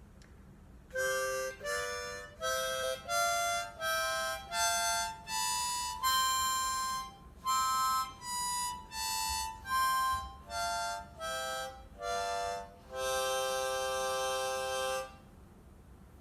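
Hohner Marine Band diatonic harmonica in C playing a major scale from the fourth hole up to the seventh and back down, one note at a time, then holding a chord for about two seconds near the end.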